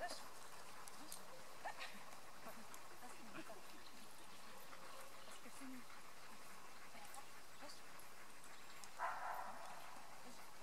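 Quiet outdoor ambience with faint, indistinct voices and small sounds from the dogs, and a brief rustling noise near the end.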